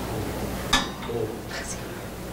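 A single sharp click about three-quarters of a second in, over faint murmured voices.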